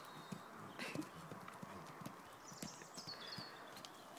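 Faint, irregular hoofbeats of a horse moving over soft, muddy ground.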